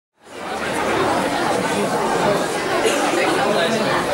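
Many voices chattering at once, fading in over the first half second, then holding steady.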